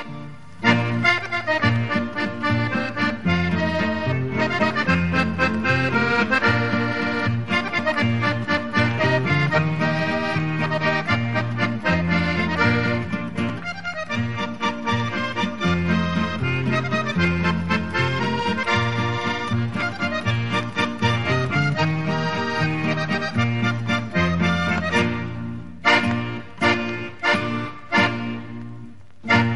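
Accordion playing a lively Navarrese jota tune, a melody over stepping bass notes. In the last few seconds it breaks into short, separated chords.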